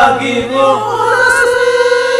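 Several voices singing together into microphones over a karaoke backing track, holding one long note through the second half.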